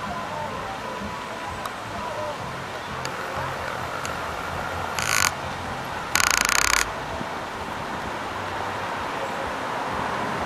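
Steady rushing of a large outdoor fountain's many water jets, with a faint murmur of people's voices. Two short bursts of wind buffeting the microphone, about five and six seconds in, the second longer and louder.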